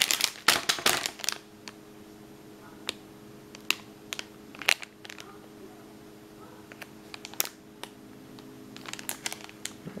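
Clear plastic cellophane sleeve around a roll of washi tape crinkling as it is handled: a busy burst at first, then scattered single crackles and a few more near the end. A faint steady hum runs underneath.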